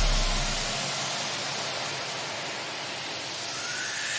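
White-noise sweep in an electronic pop track. The deep bass of the preceding section dies away within the first second, leaving a hiss that dips and then swells again near the end as a riser into the next section.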